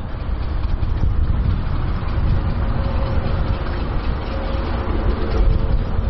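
A loud, steady, low rumble with a hiss over it, without any clear rhythm or pitch.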